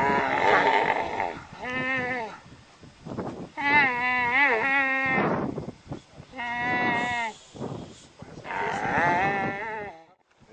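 A kneeling dromedary camel calling: five loud, drawn-out moaning calls that waver in pitch, with short pauses between them, the longest about four seconds in.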